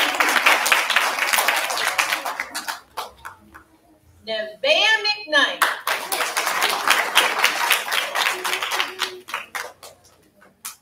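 Audience applauding in two rounds. The first round fades out about three seconds in, and a second round starts at about five and a half seconds and dies away near the end.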